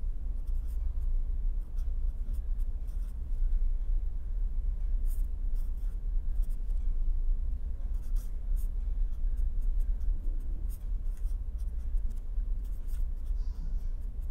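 Marker pen writing on paper: a string of short, scratchy strokes over a steady low hum.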